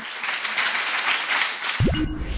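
Audience applauding, a dense patter of many hands. Near the end a rising whoosh from a transition sound effect comes in.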